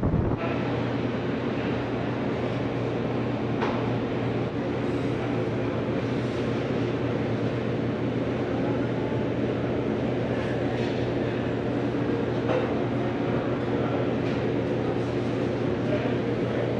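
Steady indoor machinery hum of a store, several constant low tones under an even hiss, with a few faint clicks.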